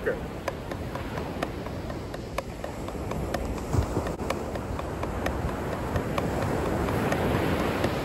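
Wooden drumsticks playing paradiddles (right-left-right-right, left-right-left-left) as sixteenth notes on a rubber drum practice pad, at a brisk even tempo. Accented downbeat strokes stand out about twice a second.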